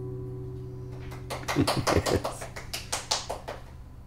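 The last strummed chord of a steel-string acoustic guitar rings and fades away. About a second in, a quick, uneven run of sharp taps follows for a couple of seconds.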